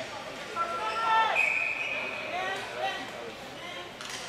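Ball hockey game sounds in an arena: players shouting and ball and stick knocks on the floor, with a referee's whistle blown once for about a second, roughly a second and a half in.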